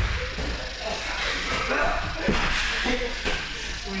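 Indistinct voices echoing in a large gym hall, with a couple of dull thuds, about two and three seconds in, from grapplers' bodies on the wrestling mats.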